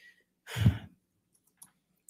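A short breath close to a microphone about half a second in, then a faint click a second later.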